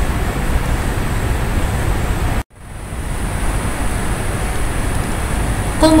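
Steady hiss of background noise with no speech, broken by a sudden cut to silence about halfway through; after the cut a faint thin high whine sits over the hiss.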